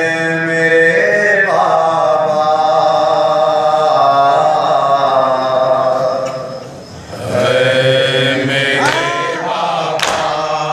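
A man chanting a noha, the Muharram lament, in long drawn-out held notes, with a brief pause about seven seconds in before the next line.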